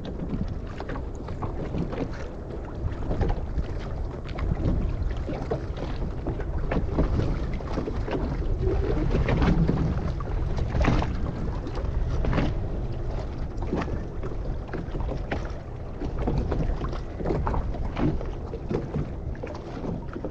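Wind rumbling on the microphone over choppy sea, with water splashing and slapping close by at irregular moments.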